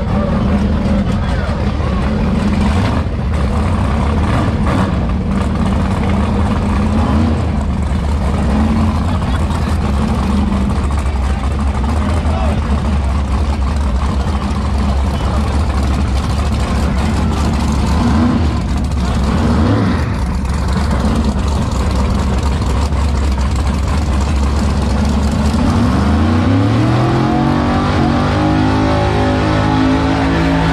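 Drag race car engine running loudly and steadily, then rising in pitch as it revs up about 26 seconds in, with crowd chatter around it.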